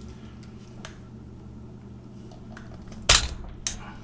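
Plastic clicks from the housing of a battery-powered electric salt and pepper grinder being worked apart by hand: a faint tick about a second in, then a sharp snap about three seconds in and a smaller click just after it.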